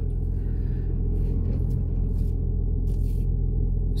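Porsche Macan GTS twin-turbo V6 idling steadily at a standstill in Sport Plus mode with the switchable sports exhaust open, a low rumble heard from inside the cabin.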